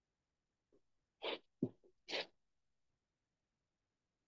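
A person's short, breathy bursts of vocal noise, sneeze-like, picked up by a video-call microphone: two bursts about a second apart, with a sharp brief sound between them.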